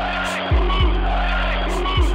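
Hip-hop beat: a held bass note under a dense, repeating instrumental layer, with kick drums landing about half a second in, again shortly after, and near the end.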